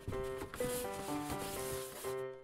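Rustling and rubbing of a cardboard box and its packing material as hands lift a small plastic robot out, over background music of short repeated notes.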